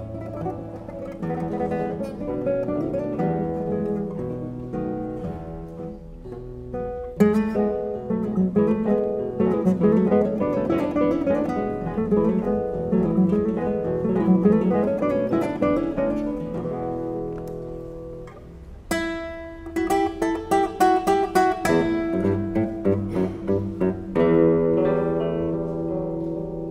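Classical guitar trio playing: nylon-string guitars plucking quick interwoven lines and chords. Near two-thirds of the way in the music drops briefly, then comes back with a sudden loud run of repeated sharp chords.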